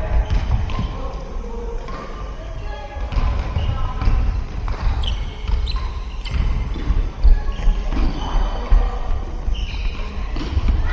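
Futsal game in a large sports hall: the ball is kicked and bounces on the wooden floor in repeated knocks, and players call out, their voices echoing through the hall.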